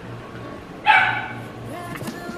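A single short, high-pitched yelp about a second in, over a faint steady hum.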